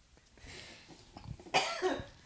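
A short cough about a second and a half in, after a faint breathy sound.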